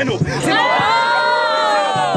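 Crowd of spectators shouting a drawn-out "ooooh" together in reaction to a freestyle rap punchline, the massed voices rising and then falling in pitch over about a second and a half.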